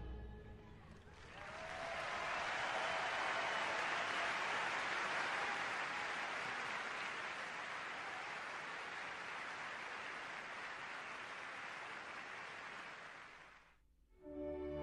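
Audience applauding as the last chord of a choir song dies away. The applause swells about a second in, holds steady, then tapers off and stops just before the end.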